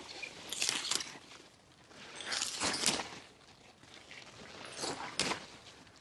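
Kale leaves rustling as they are snapped off their stems by hand, in three short bursts about two seconds apart.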